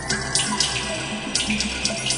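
Water splashing and bubbling in short, irregular bursts, over the held tones of an ambient music drone.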